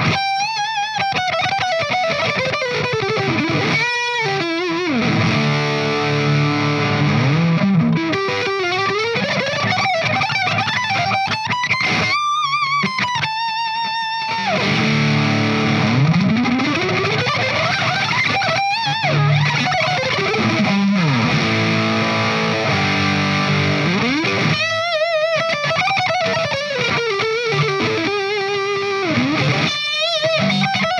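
Charvel Pro-Mod Relic San Dimas electric guitar through a modded Marshall 1959HW Plexi amp, played overdriven. It plays a single-note lead with wide vibrato on held notes and several long pitch glides sweeping up and down.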